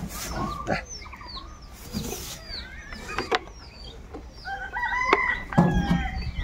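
Poultry and small birds calling: many short high chirps repeat throughout, with chicken clucks among them and a longer held call, like a rooster's crow, about five seconds in.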